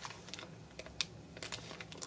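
Faint, irregular small clicks of old silver coins knocking against each other inside a plastic zip bag as it is handled.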